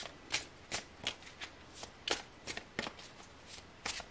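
Tarot cards being shuffled by hand: a string of short, irregular slaps and clicks, two to four a second.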